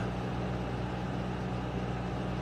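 Steady low hum with a faint hiss underneath: constant background machine or electrical noise in the room, with no change or event.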